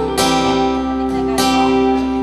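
Acoustic guitar strumming slow chords that ring out between strokes: two strums about a second apart.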